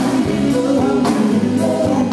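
Live rock band playing electric guitars and drums, with a sung vocal line over a steady beat.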